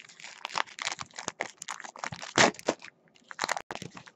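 Crinkling and crackling of a trading-card pack's wrapper as baseball cards are handled, in a dense run of irregular crackles for about three seconds and a few more clicks near the end.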